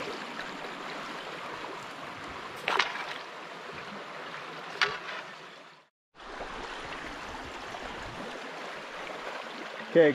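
Shallow brook water rushing steadily over riffles. Two brief sharp sounds stand out, about three and five seconds in, and the sound cuts out for a moment about six seconds in.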